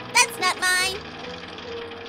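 A high-pitched, bending voice sounds for about the first second. After that it goes quieter, leaving a steady low hum and a faint held tone, most likely light background music.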